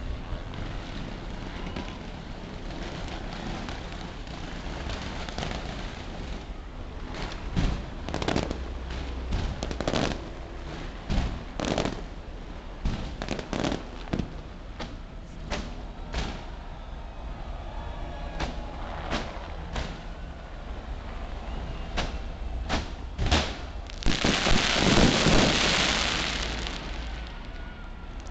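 Daytime fireworks going off in a long irregular series of sharp bangs and pops. Near the end comes a loud rushing swell of noise that lasts a few seconds.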